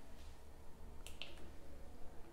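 Two or three faint, sharp clicks in quick succession about a second in, over a steady low hum.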